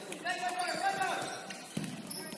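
Futsal play on an indoor wooden court, echoing in a large hall: players' voices calling out, and a ball kicked or struck with a sharp thud near the end.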